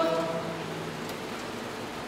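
The congregation's chanted response ends on a held note that fades out within the first second, leaving a steady low hiss of room noise.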